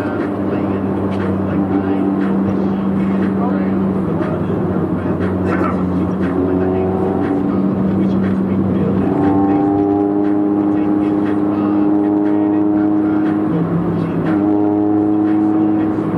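Cabin sound of a Honda Civic EG with its B18C4 VTEC engine cruising in traffic: a steady engine and road drone, under sustained tones that hold for a few seconds and then jump up or down in pitch.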